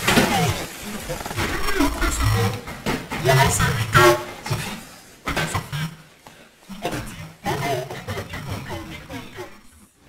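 A person's voice speaking in several short phrases with brief pauses, the words unclear.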